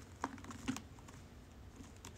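A cat's claws scratching and catching on the sisal rope of a cactus cat tree: a quick run of scratchy clicks from about a quarter second in, two of them louder, then quieter.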